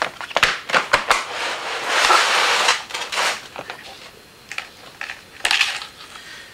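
Handling of a plastic worm bin: a quick run of clicks and knocks, then a scraping rustle about two seconds in, with another short rustle near the end.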